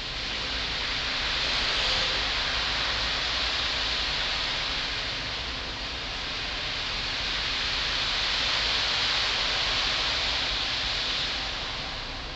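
Concert marimba played with four yarn mallets, giving a hissing wash without clear notes that swells up, dips midway, swells again and fades near the end.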